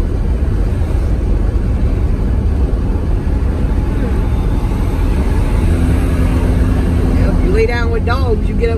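Steady low rumble of a car being driven, heard inside the cabin: road and engine noise, with a faint steady hum joining about two-thirds of the way through.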